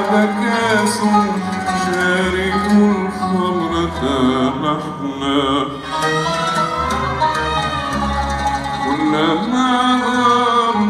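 An Arabic orchestra playing a classical Arabic song, with a male voice singing long, held, wavering lines over it.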